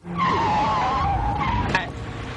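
Vehicle tyres squealing in a skid for about a second and a half, a wavering high squeal over a low engine rumble, cutting off shortly before the end.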